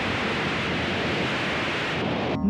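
A steady, even rushing noise: a sound effect under a TV title sequence.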